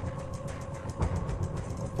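Steady low outdoor rumble with a faint steady hum and light crackle above it.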